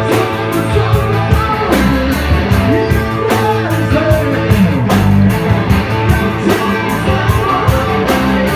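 Live blues-rock band playing: electric guitar over bass and a steady drum beat, heard as a loud, dense mix.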